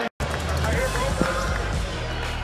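Basketball game sound in an arena, cut off for an instant just after the start, then resuming with a steady low musical beat over crowd noise and a basketball bouncing on the hardwood court.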